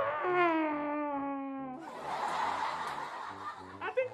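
A man wailing into a pillow: one long held cry that sags slightly in pitch, breaking into a breathy sob for about two seconds.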